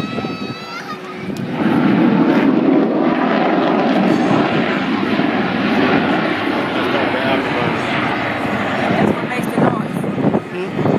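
The twin General Electric F414 jet engines of an F/A-18 Super Hornet making a slow, low-speed pass. The noise swells about a second and a half in, then stays loud and steady for the rest of the pass.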